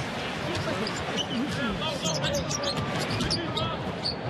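Basketball being dribbled on a hardwood arena court, under steady crowd noise and voices.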